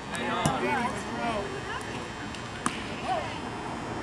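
Scattered voices of spectators and players around a baseball field, with one sharp click a little past halfway.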